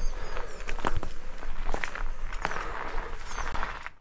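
Footsteps crunching irregularly on a gravel track, with a few faint high chirps.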